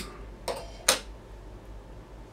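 Three short clicks and taps from fly-tying tools being handled, the last, just under a second in, the loudest.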